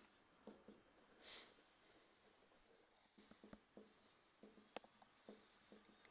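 Faint marker pen strokes on a whiteboard: a soft scratchy stroke about a second in, then scattered light taps and short strokes as the pen writes.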